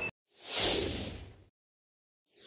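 A single whoosh transition sound effect, a swish that swells about half a second in and fades away within a second.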